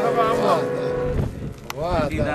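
A male voice ends a sung phrase over a held harmonium note, and both stop about a second in. A sharp click and a short spoken voice follow near the end.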